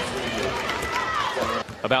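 Basketball arena crowd noise during live play, with faint high squeaks from players' shoes on the hardwood court. A man's commentary voice starts near the end.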